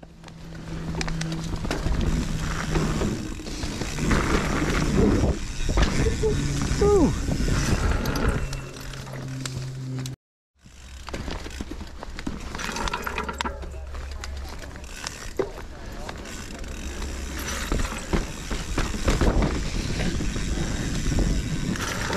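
A mountain bike being ridden over a leaf-covered dirt trail and a wooden log ride: tyres on dry leaves and dirt, with the bike rattling and knocking over bumps. The sound breaks off suddenly for a moment about ten seconds in.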